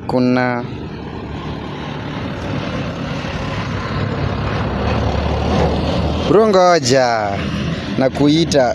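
A light box-body lorry drives close past on a dirt road. Its engine rumble and tyre noise grow louder over several seconds and are loudest about six seconds in.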